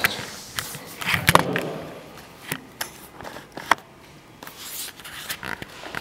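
Scattered light knocks, clicks and scraping handling noises, with a brief murmured voice sound about a second in.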